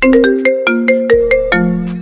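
iPhone ringtone for an incoming FaceTime Audio call: a quick run of bright ringing notes at changing pitches, ending on a lower held note that fades near the end.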